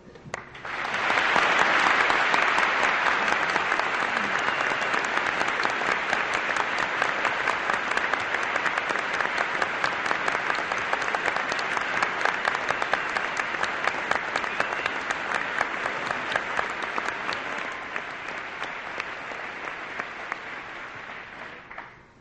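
Audience applauding at length to welcome a speaker, the clapping swelling quickly about a second in and then slowly fading toward the end.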